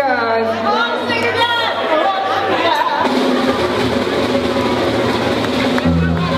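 Live band music with a voice over it in a large, echoing hall; about three seconds in it gives way to the chatter of a crowd.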